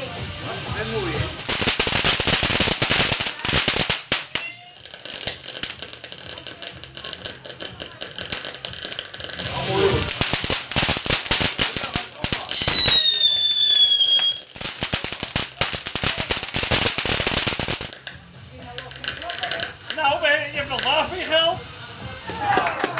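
Ground fountain firework spraying sparks with loud, dense crackling in long stretches, dying down in the last few seconds. A short falling whistle cuts through about halfway.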